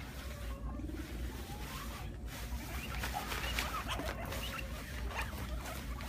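Guinea pigs making short, soft squeaks and rustling through hay and bedding as they scurry around.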